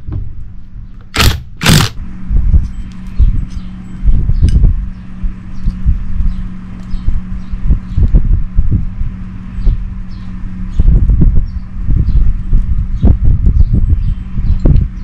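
Two short bursts of a cordless impact driver, half a second apart about a second in, undoing the intake manifold bolts on a motorcycle cylinder head. Then come knocks and handling noise as the manifold is lifted off and tools are set down, over a steady low hum.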